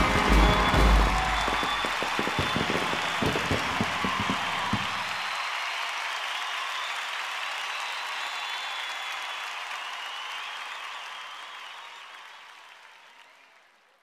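Aerial fireworks shells bursting in a rapid finale, a close run of low booms for about the first five seconds. A large crowd applauds and cheers over the booms and on after them, then fades out near the end.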